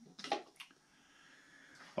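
Two brief light knocks in the first second as a tobacco tin is set down on the workbench, then faint room tone.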